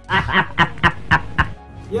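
A man's short chuckle: a quick run of about six breathy laughing pulses in the first second and a half, over background music.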